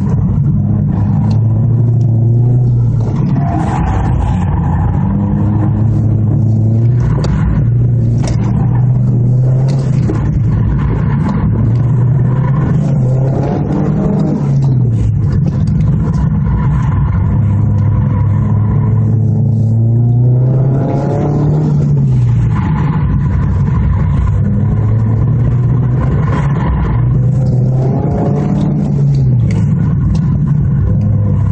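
2013 Ford Focus SE's four-cylinder engine with an aftermarket 2.5-inch catback exhaust, heard from inside the cabin while it is driven hard through an autocross course. The engine note climbs and drops again and again every few seconds as the driver accelerates and lifts between cones.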